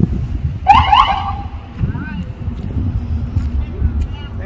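A short, loud siren whoop from a police car about a second in, over the low rumble of vehicles passing in the parade, with scattered voices.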